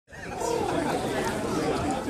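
Several people chatting, voices overlapping, fading in from silence at the very start.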